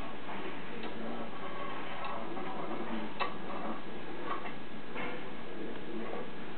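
Faint, light clicks, about one a second and unevenly spaced, over a steady hiss: a hand-made metal habaki (blade collar) being slid and seated onto a katana blade for a first fitting.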